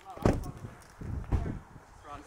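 Two heavy thuds about a second apart, with a low rumble and brief fragments of voices.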